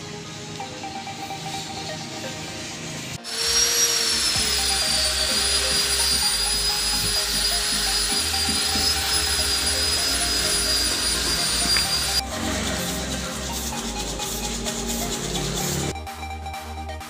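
Electric angle grinder running against metal for about nine seconds, starting suddenly a few seconds in and cutting off sharply: a high, slightly wavering motor whine over grinding noise. Background electronic music with a steady beat plays throughout.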